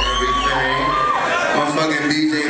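Club crowd cheering and shouting between songs, over a deep bass boom from the PA that fades about a second in. A high whistle-like tone is held, steps up about a second in, then drops away.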